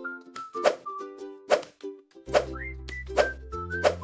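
Cheerful children's background music: a light melody over sharp percussive clicks, with a bass line coming in a little past the middle.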